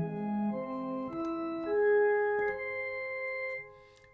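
Electronic keyboard with a sustained, organ-like tone playing notes that rise one after another in major-third steps, each held about half a second. This is the octave divided into three equal parts, outlining an augmented chord. The last note fades out near the end.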